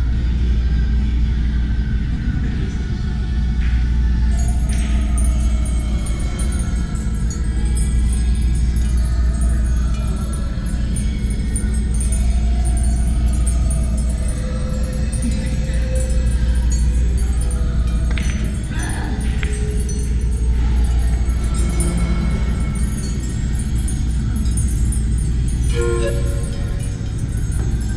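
Background music with a strong, steady bass fills the pool room. A few sharp clicks, typical of pool balls striking, come about three and five seconds in and again in a short cluster around nineteen seconds in.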